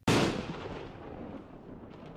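A single deep boom, like a cannon shot or explosion, that hits sharply and dies away slowly over a few seconds.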